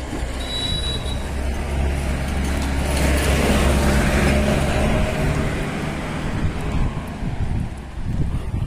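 A motor vehicle's engine running as it passes close by on the road, swelling about three seconds in and fading away by about seven seconds, over a steady low traffic hum.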